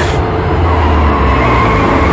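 Horror-trailer sound design: a loud, dense, low-heavy build of rumbling noise and score, opening with a short swish.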